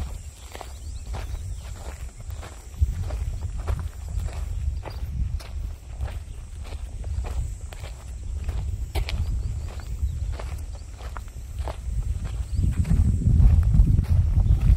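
Footsteps of a person walking at a steady pace, about two steps a second, over a low rumble that grows louder near the end.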